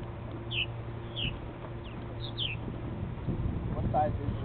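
Purple martins giving short, falling chirps, about five in the first two and a half seconds, over a steady low hum.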